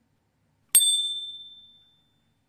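Notification-bell 'ding' sound effect from a subscribe-button animation: a single bright bell strike about three-quarters of a second in, ringing out over about a second.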